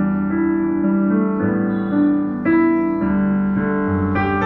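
Roland HP205 digital piano played with both hands: slow, held chords, a new chord struck about every second.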